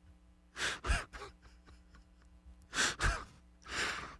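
A man's breaths into a close microphone, sighing and gasping in three short bouts: about a second in, around three seconds, and just before the end, with near silence between.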